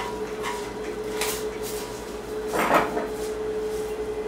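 Steady hum of a Juki industrial sewing machine's motor left running, with short knocks and rustles of handling over it, the loudest about two and a half seconds in.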